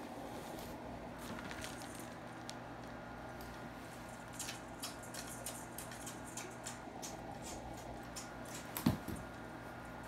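Faint soft smacks of a toddler kissing a baby's face: a scatter of small clicks, thickest in the middle, then one louder short sound near the end.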